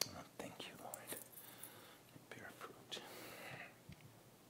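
Faint whispered speech in short breathy bursts, with a few soft clicks and a brief hiss about three seconds in.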